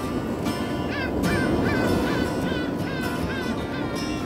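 Background music over a steady rushing wash. From about a second in, a bird calls in a run of about nine short, evenly spaced notes that grow fainter.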